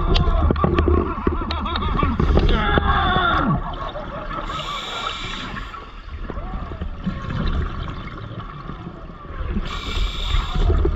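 Scuba diver breathing through a regulator underwater: exhaled air bubbling out for the first few seconds, a hissing inhale about four and a half seconds in, a fainter bubbling exhale, then another hissing inhale near the end.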